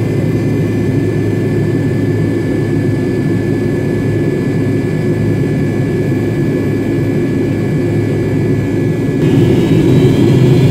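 Rear-mounted Pratt & Whitney JT8D turbofans of a McDonnell Douglas MD-83 heard from inside the cabin while taxiing: a steady rumble with a thin high whine. Near the end the whine changes pitch.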